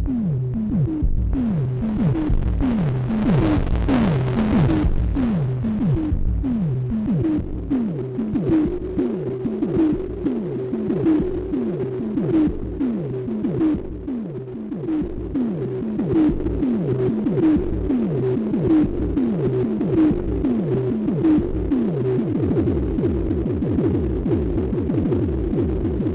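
Moog DFAM analog percussion synthesizer running its step sequence: a steady train of pitched drum hits, about two a second, each sweeping down in pitch. A hiss of noise rides over the hits for a couple of seconds a few seconds in.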